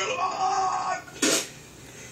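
A person's voice holding a pitched sound for about a second, followed by a short cough-like burst.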